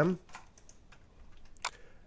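A few faint clicks from a computer keyboard and mouse, with one sharper click about one and a half seconds in, as files are copied and the folder view changes.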